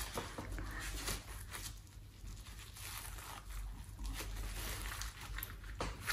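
Faint rustles and light taps of food being handled on a kitchen counter, over a low steady hum.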